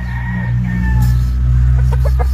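A loud, low-pitched drone that shifts pitch a few times and swells towards the middle, with a faint falling higher tone in the first second.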